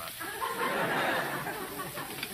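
Studio audience laughing, a swell of many voices that rises just after the start and fades near the end.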